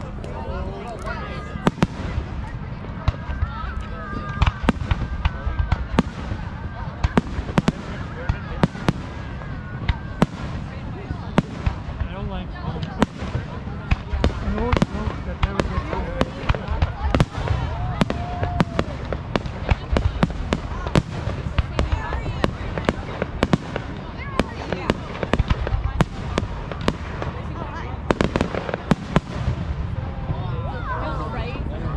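Aerial fireworks shells bursting in quick, irregular succession, many sharp bangs throughout, with people talking in the background.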